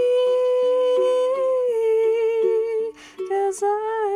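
A woman's voice holding one long wordless note over plucked ukulele notes, the pitch dipping slightly partway through. Just before the end she takes a breath and her voice slides up into a new phrase.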